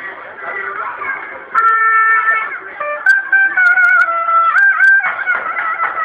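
Zurna (shrill Turkish folk shawm) playing a loud, sustained, wavering melody, coming in suddenly about a second and a half in over crowd chatter.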